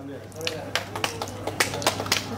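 Scattered hand claps from a few people: sharp, irregular claps starting about half a second in and running on.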